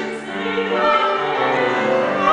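Classically trained soprano singing a Hebrew art song with vibrato, accompanied by grand piano.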